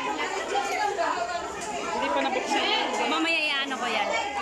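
Several people talking at once: overlapping chatter, with one higher-pitched voice standing out near the end.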